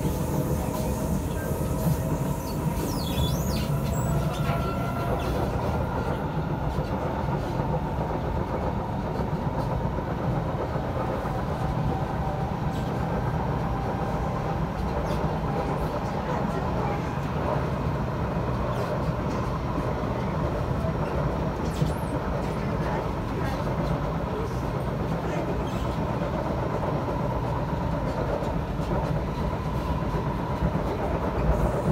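Cabin noise of an SMRT C751B metro train running at speed on elevated track: a steady rumble of wheels on rail with a few light clicks. A faint whine in the first several seconds fades out.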